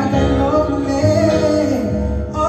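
A man singing a slow song into a microphone over instrumental accompaniment, holding a long note that slides down near the end.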